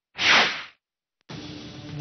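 A single swoosh sound effect, a news transition about half a second long that sweeps downward. A quiet steady background bed comes in near the end.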